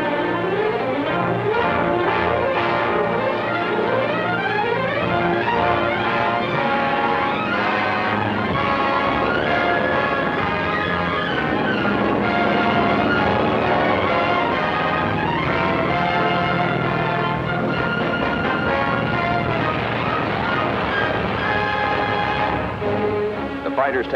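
Orchestral film score with brass playing steadily, with many rising and falling runs.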